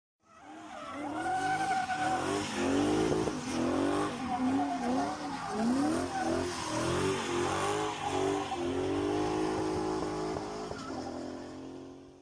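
Car tyres squealing in a run of rising and falling squeals, as in drifting, over a car engine's steady note. The sound fades in at the start and fades out near the end.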